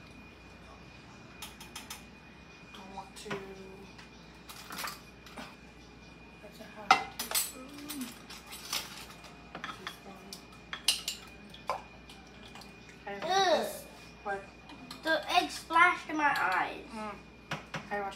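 Wire whisk clinking and tapping against the sides of a glass measuring cup as a liquid cake-batter mixture is whisked, in irregular strokes.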